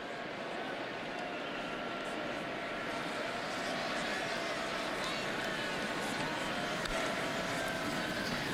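Stadium crowd noise: a steady din of many voices that grows a little louder over the seconds.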